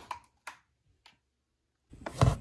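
A few faint, separate clicks, about half a second apart, then quiet.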